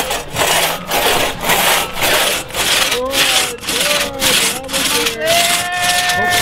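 Two-man crosscut saw cutting through a log, its teeth rasping on each push and pull in an even rhythm of a little under two strokes a second.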